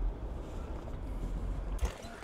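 Low, steady rumble of a car driving, heard from inside the cabin; it cuts off near the end.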